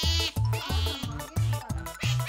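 Background music with a steady thumping beat, over which an Asian small-clawed otter gives repeated high, wavering squeals, begging for the tuna that the cat is eating.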